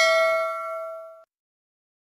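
Notification-bell ding sound effect of a subscribe animation: one bright bell strike ringing out and fading, cut off abruptly about a second and a quarter in.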